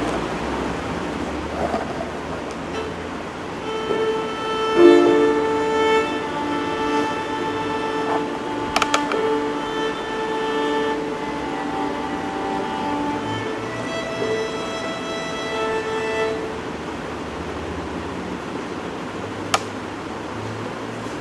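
Violin bowing long sustained notes and double stops, starting a few seconds in and stopping a few seconds before the end, with a brief click near the end.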